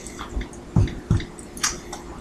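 A few short, soft clicks and taps, about five of them spread over two seconds, from hands handling things at a kitchen sink.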